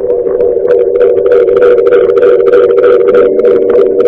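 Rock band playback of an electric guitar performance, heard loud and distorted through a speaker: a sustained chord holds steady throughout, with short crackling strokes on top.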